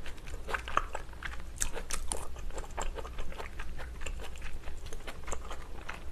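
Close-miked chewing of a mouthful of cream-sauce tteokbokki, with irregular wet mouth clicks and smacks.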